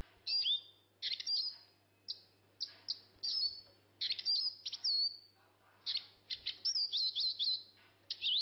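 Bird chirping: short high chirps and whistled notes come in quick clusters, some of the notes sliding down in pitch, with brief gaps between the clusters.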